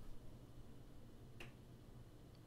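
Near silence with a faint low hum, broken once by a single short, sharp click about one and a half seconds in.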